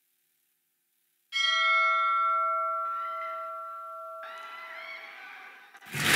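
About a second of silence, then a single strike of a large bell that rings on and slowly fades, heard as the soundtrack of a film teaser played over a hall's sound system. Fainter wavering sounds join the ringing twice as it fades.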